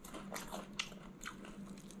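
A person biting into and chewing a crisp pan-fried river smelt: a few faint, short crunches.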